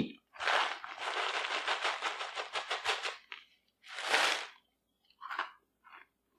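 Kraft paper bag rustling and crinkling for about three seconds as a hand digs into it for meat granola, then a shorter rustle about four seconds in and a few faint crunches of chewing the crunchy dried-beef granola near the end.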